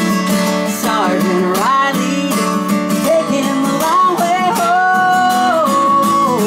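Acoustic guitar strummed steadily while a woman sings, her voice gliding between notes and holding one long note near the end.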